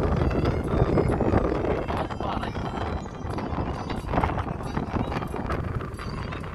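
Road and engine noise inside a moving vehicle on a hill road: a steady low rumble with frequent knocks and rattles, and voices in the cabin.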